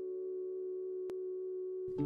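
A steady, unchanging drone of several held tones together, a sustained pad from intro music. A faint click about halfway through.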